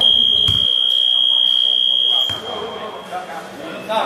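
Basketball game buzzer sounding one loud, steady, high-pitched tone for a little over two seconds, then dying away.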